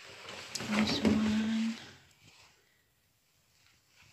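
Rustling of cloth as a washed garment is handled, for about the first two seconds, with a woman's short closed-mouth hum, 'mmm', about a second in.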